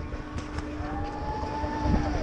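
Chairlift station machinery running: a low rumble with a steady hum, and a higher tone that rises slightly and then falls away between about one and two seconds in.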